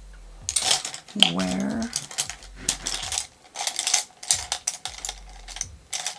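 Rummaging for a makeup brush: a quick, uneven run of clicks and clatters as small hard brush handles and makeup items knock together.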